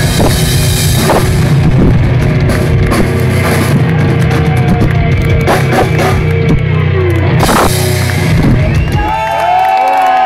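Thrash metal band playing live, distorted electric guitars over a drum kit, in the closing bars of a song. The music stops about nine seconds in and the crowd starts cheering.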